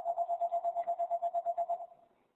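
A steady mid-pitched electronic tone pulsing rapidly, about eight times a second, for nearly two seconds before it stops.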